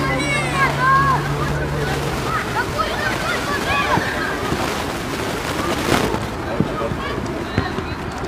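Young footballers shouting and calling to each other on the pitch over a steady outdoor rush, with a low hum that stops about two and a half seconds in. A single sharp thump sounds about six seconds in.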